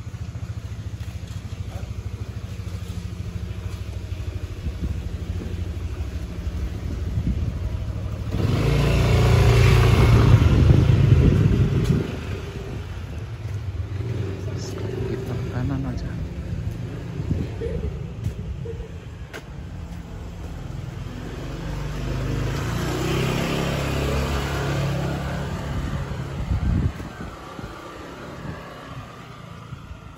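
Motor scooter engines in a narrow alley: one passes close about nine to twelve seconds in, the loudest moment, and another swells up and fades about twenty-two to twenty-six seconds in, over a low steady rumble.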